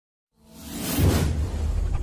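Channel-logo intro sound effect: a whoosh swells in from silence and peaks about a second in, where a deep bass rumble starts and carries on under it.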